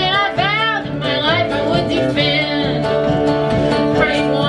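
Live acoustic string band playing a bluegrass-style tune, with fiddle, guitar and upright bass.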